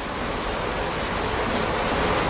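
Steady rushing of water, a waterfall's even hiss, swelling slightly over the two seconds.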